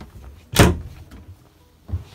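Wooden storage locker door shut with one sharp bang about half a second in, followed by a softer thud near the end.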